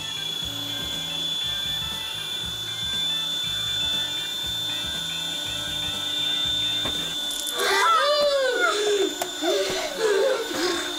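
Countertop blender running with a steady high-pitched motor whine over background music. About seven and a half seconds in, children scream.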